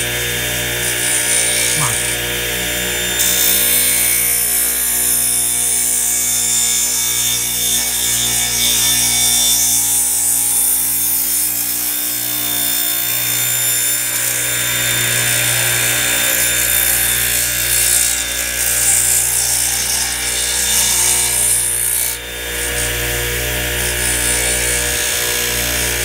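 Radial arm saw running steadily and crosscutting a wooden board, with the blade's cutting noise over the motor's hum for most of the run. The cutting noise drops away about 22 seconds in.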